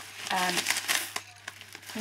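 A plastic zip bag of small letter beads crinkling as it is handled and turned, the beads shifting inside with a few light clicks in the second half.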